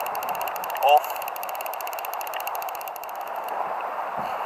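Steady rushing wind and sea noise on the microphone, with a fast, even ticking high up that stops about three and a half seconds in.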